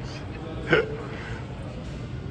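A single short, sharp vocal sound from a person, like a hiccup, about two-thirds of a second in, over steady background room noise.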